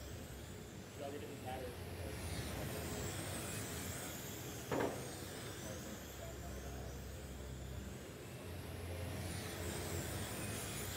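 Electric 1/10-scale RC touring cars racing on an indoor carpet track, their motors giving high whines that rise and fall as the cars pass. A single short knock sounds about halfway through.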